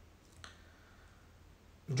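Quiet room tone with a single short, faint click about half a second in.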